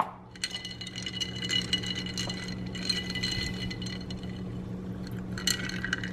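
Oat creamer being poured from a carton into a glass of iced cold brew, with ice cubes rattling and clinking against the glass.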